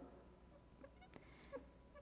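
Near silence: room tone, with a few faint small ticks and a faint brief squeak about a second in.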